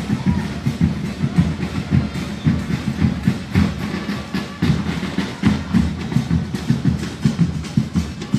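Protest drumming: bass drums and other percussion beating continuously, with crowd voices underneath.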